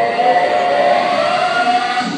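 Recorded backing track over the PA: one long tone held and slowly rising in pitch, over the noise of an audience in a large hall.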